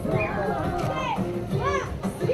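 Several lively voices talking and calling out over background music.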